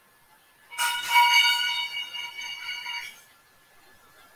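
A bright chime-like tone, with several steady pitches sounding together, starts suddenly about a second in and fades out over about two seconds.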